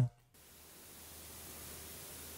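Serum synthesizer's noise oscillator played alone as an airy noise pad: a soft hiss that fades in and swells slowly, its level and stereo pan moved by an LFO.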